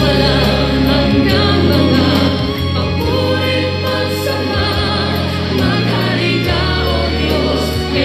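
A choir singing a gospel hymn over steady instrumental backing.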